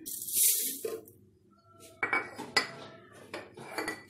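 Sesame seeds poured from a bowl into a plastic blender jar, a short rushing rattle in the first second. About two seconds in comes a sharp click, then light knocks and clatter of the bowl and jar being handled on the countertop.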